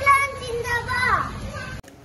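A young child's raised voice declaiming a line with long, drawn-out syllables, cut off abruptly near the end.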